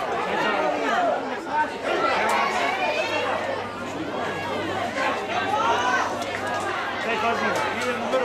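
Several voices talking and calling out over one another at once, with some higher-pitched shouts among them; no single speaker stands out.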